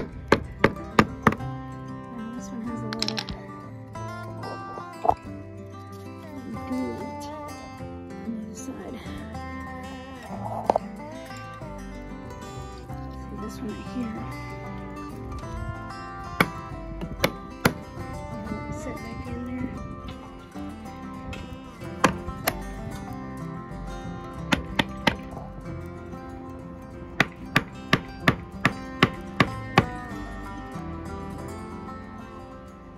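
Claw hammer striking a wooden porch-railing brace to knock it back to the right angle. The blows come in short runs and single strikes, ending in a quick run of about eight, over steady background music.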